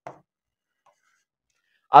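Faint, brief sounds of a pen writing letters on a board, mostly quiet between strokes. A man's voice starts right at the end.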